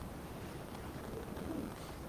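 Quiet room tone: a steady low hum with a few faint, brief, low murmurs and no distinct event.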